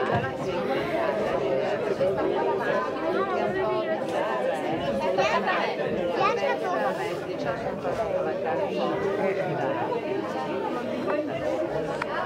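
Many people talking at once, overlapping voices with no single speaker standing out, steady throughout, in a large indoor hall.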